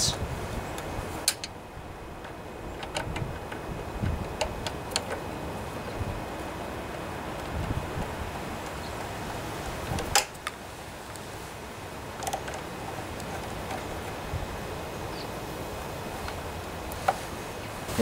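A 5/16-inch nut driver working the throttle-cable clamp screw on a Briggs & Stratton lawnmower engine: a few scattered light metal clicks and taps, the sharpest about ten seconds in, over steady background noise.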